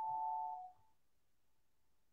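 An electronic chime: a few clean, steady tones stepping down in pitch, lasting under a second. Then near silence.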